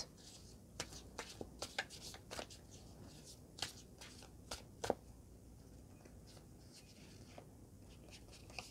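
A deck of tarot cards shuffled by hand: faint, irregular soft snaps and clicks of cards sliding against each other, mostly in the first five seconds.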